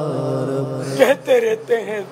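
A man chanting an Urdu supplication in a melodic voice: a long held note with vibrato, then sung words beginning about a second in.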